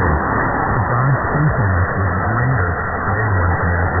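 Distant medium-wave AM broadcast from WFME on 1560 kHz, received on a software-defined radio through steady static hiss. The programme audio is weak and indistinct under the noise, mostly low notes.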